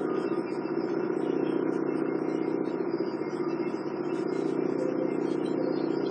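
Steady background hum with a faint hiss, unchanging throughout.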